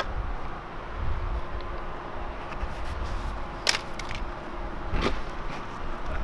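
A low, steady outdoor rumble with three sharp clicks: one at the start, the loudest about three and a half seconds in, and one about five seconds in.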